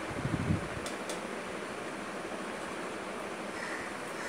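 Faint knocks and two brief scratches of a ruler and marker against a whiteboard in the first second or so, then a steady low hiss of room noise.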